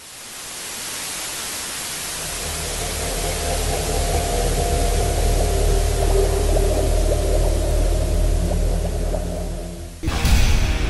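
Television static: a steady hiss that starts suddenly and grows louder over the first second or two, with a low hum and a few faint steady tones swelling underneath. It dips slightly and cuts off just before the end.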